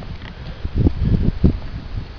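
Wind and handling noise on a handheld camera's microphone: an irregular low rumble with several dull thumps in the second half.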